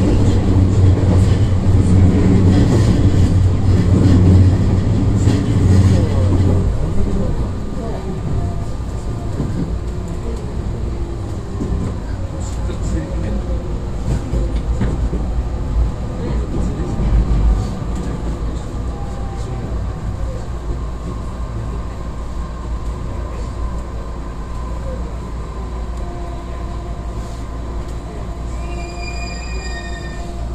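Inside the cabin of an electric commuter train: wheels and running gear are loud at first, then quieter as the train slows, with a motor whine gliding down in pitch as it brakes into a station. A few short high tones come near the end.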